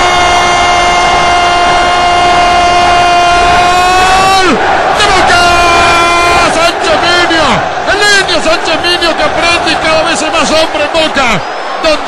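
A football TV commentator's long sustained goal cry, one held note lasting about four and a half seconds, then a rapid string of short shouted syllables, about four a second, over a stadium crowd.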